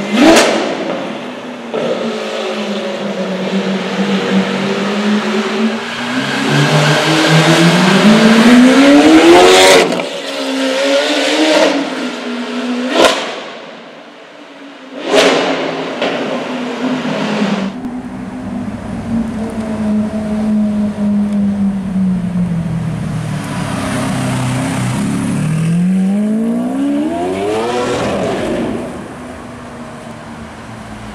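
Lamborghini Aventador SV's V12 engine pulling away, its revs rising steeply in two long pulls, about a third of the way in and again near the end. Three sharp cracks from the exhaust come right at the start and twice around the middle.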